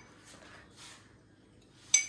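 A metal spoon stirring a glass of strawberry milkshake: faint for most of the time, then one sharp clink of spoon against glass near the end that rings briefly.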